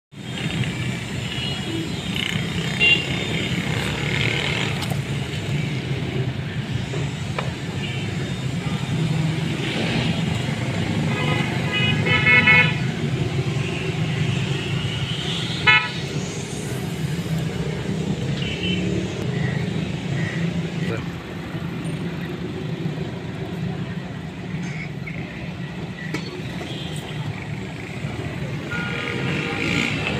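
Street traffic running steadily, with vehicle horns sounding in short honks about eleven to thirteen seconds in and once more briefly near sixteen seconds.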